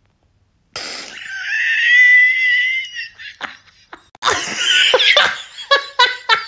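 A man's laughter: after a moment of silence, a high-pitched squealing laugh held for about two seconds, then a loud burst and rapid rhythmic bursts of laughter, about three a second, near the end.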